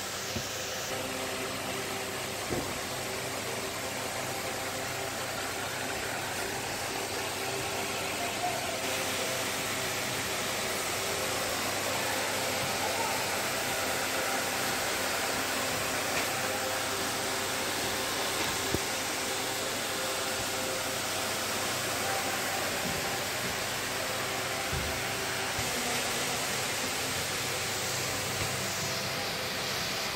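Ventilation fans of a railway coach compartment running: a steady whirring rush of air with a faint steady hum underneath, and a few light knocks.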